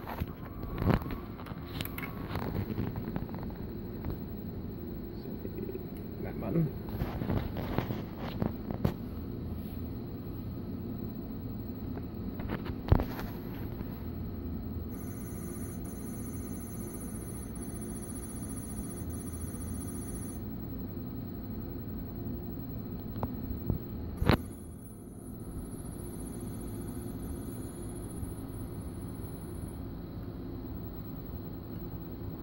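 VHS video recorder running with its cover off, playing a tape wound on large open reels: a steady hum from the transport and head-drum motors, with scattered clicks and knocks. Two spells of a high thin tone, each about five seconds, come in the second half.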